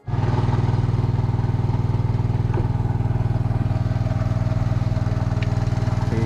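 A small engine on the fishing boat running steadily with a fast, even pulse.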